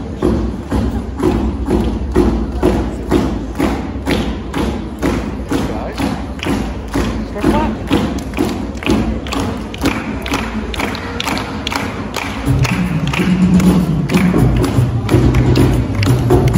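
A drum beaten in a steady rhythm of about three beats a second. Near the end a low, steady pitched tone joins the beat.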